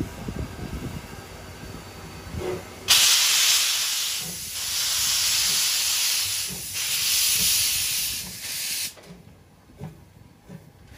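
C11 tank steam locomotive pulling away slowly, with a loud hiss of steam blowing from its cylinder drain cocks that starts suddenly about three seconds in, swells and eases in three surges, and cuts off sharply about six seconds later.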